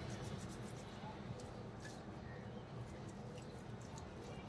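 Faint handling sounds: oiled hands rubbing and scooping soft minced chicken mixture out of a steel pot, with a few small ticks.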